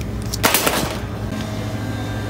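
A plastic squeeze bottle of lemon juice set into a wire shopping cart among spice jars: one brief rattling clatter about half a second in, over a steady store hum.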